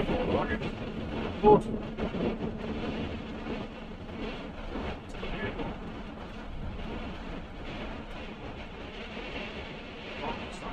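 Steady road and engine noise inside a van's cab at motorway speed, picked up by a faulty microphone, with a single sharp knock about a second and a half in.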